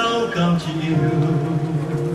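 Electronic keyboard playing held chords of church music, with a voice over it.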